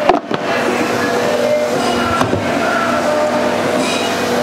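Steady machinery hum with a few held tones, with a single click about two seconds in.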